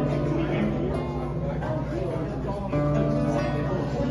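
Acoustic guitar strummed in sustained chords, the instrumental lead-in before the singing starts.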